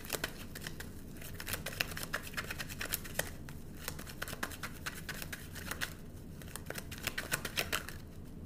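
Tarot deck shuffled by hand: a continuous run of quick, irregular card flicks and clicks.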